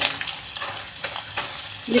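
Sliced skin-on pork belly sizzling steadily in hot oil in a wok, with ginger, garlic and fermented black beans just added, as a metal ladle stirs it.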